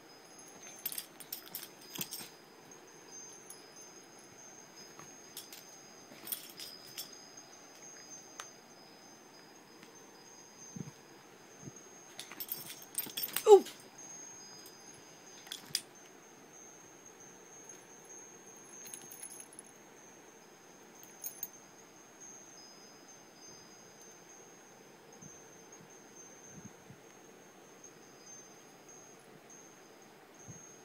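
Metal collar tags jingling and clinking in scattered bursts as a cat and a corgi wrestle, with faint high ringing between bursts. The loudest burst comes about halfway through, together with a brief rising squeak.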